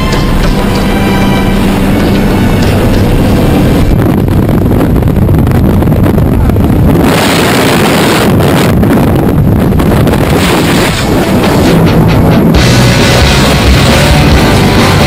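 Loud background music. It grows denser and noisier about four seconds in, and steadier tones return near the end.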